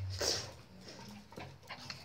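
Puppies playing with a plush heart toy: a short puppy sound in the first half-second, then faint quieter movement.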